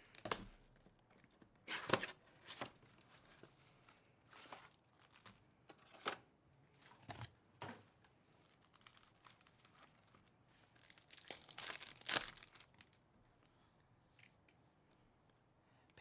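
Plastic shrink wrap torn off a trading-card box and foil card packs ripped open and handled: a string of short rips and rustles, with a longer stretch of rustling about eleven seconds in.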